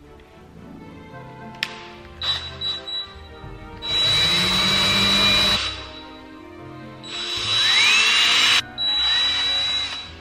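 DeWalt cordless drill boring a hole through a wooden bead: a few short trigger pulses, then three longer runs of a second or two each with a steady high whine, the middle run rising in speed as it starts.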